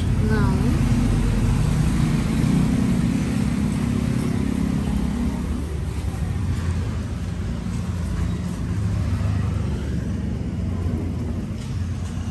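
Steady street traffic noise with a vehicle engine running nearby, a low rumble that eases a little about halfway through.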